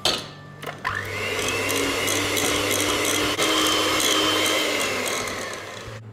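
Electric hand mixer: a couple of clicks, then the motor starts about a second in and runs steadily at speed, beaters creaming butter and powdered sugar in a glass bowl, and winds down near the end.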